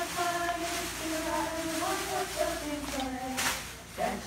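A group of girls singing together, unaccompanied, on held notes. A brief rustle comes near the end.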